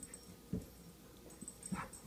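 Quiet sounds of a Saint Bernard puppy on a hardwood floor: a soft thump about half a second in, and a brief faint sound near the end. The squeak toy is not squeaked.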